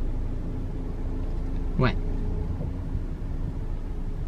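Steady low rumble of a car running while stopped, heard from inside the cabin, with a faint steady hum above it.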